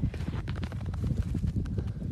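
Footsteps crunching through snow, an irregular run of soft steps with scattered crackles, over a low rumble of wind buffeting the microphone.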